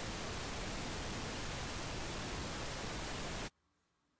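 Pink noise from the SpectraFoo software signal generator, set to RMS level. It plays as a steady, even hiss and cuts off suddenly about three and a half seconds in.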